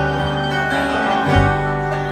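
Acoustic bluegrass band of guitar, mandolin, banjo and upright bass playing between vocal lines. A strong upright-bass note comes in about one and a half seconds in.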